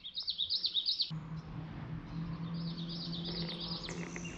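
A songbird singing rapid runs of high chirps in two phrases, the second starting a little past halfway. About a second in, a steady low hum starts underneath and carries on.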